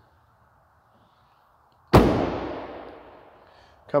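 A 2009 Ford Mustang GT's trunk lid slammed shut: one loud bang about two seconds in, with a long echo dying away over nearly two seconds.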